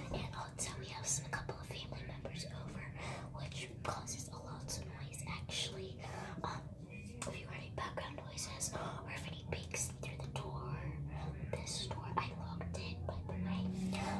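A girl whispering ASMR-style throughout, breathy and close to the microphone, over a steady low hum.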